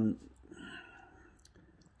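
A pause in a man's talk: the tail of his drawn-out "um", then a faint breath and a few small mouth clicks.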